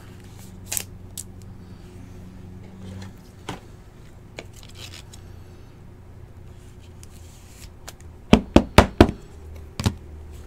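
Trading cards and a clear plastic card holder being handled by hand: faint rubs and clicks over a low steady hum, then a quick run of about four sharp clicks a little after eight seconds in and one more near the end.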